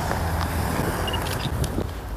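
Road traffic: a steady low rumble of a car on a nearby street.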